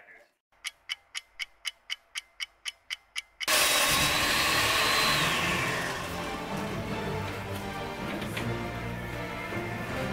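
A clock ticking about four times a second. Then, about three and a half seconds in, a sudden loud crash, and background music starts and carries on.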